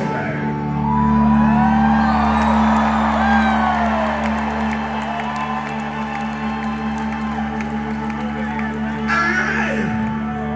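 A live rock band sustains a held chord through a stadium PA. Crowd voices whoop and cheer over it, loudest in the first few seconds.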